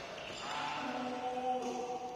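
A man's drawn-out vocal call on the badminton court, a single held note lasting about a second and a half, starting about half a second in.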